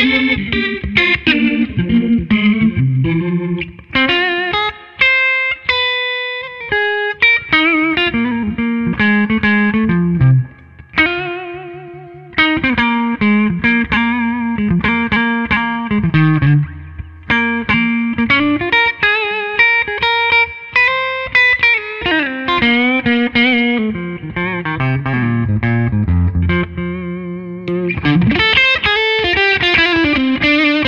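Gibson Memphis 2015 ES-335 semi-hollow electric guitar played through an amplifier on its neck pickup, a flowing mix of single-note lines and chords with string bends and vibrato.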